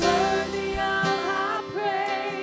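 Women singing a worship song into microphones over instrumental accompaniment, holding long notes that waver and step in pitch.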